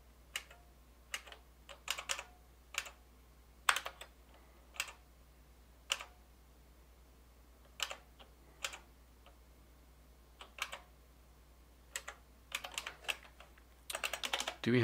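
Computer keyboard keystrokes, sparse and irregular: single key presses and a few short quick runs of keys, over a faint low steady hum.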